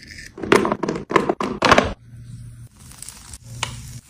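A metal vegetable shape cutter with a plastic cap is pressed through slices of cucumber and carrot onto a wooden cutting board, giving about five crisp cuts and thunks in the first two seconds. After that it goes quieter, with a faint low hum.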